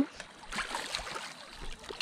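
Shallow river water sloshing and lapping close to the microphone, a steady wash with a few faint splashes.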